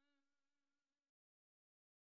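Near silence: the gap between two songs, where the last held note has already faded to nothing.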